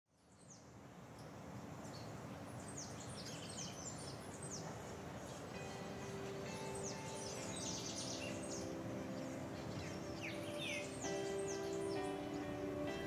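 Outdoor ambience with many birds chirping, fading in from silence. Soft music of held notes comes in about halfway through and changes chords twice.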